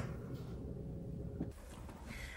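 Quiet room tone with a faint steady low hum. It drops to a slightly quieter background about a second and a half in.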